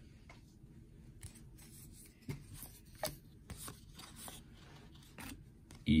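Baseball trading cards slid one by one off a stack held in the hand: faint rubbing of card stock with a soft click or scrape about once a second.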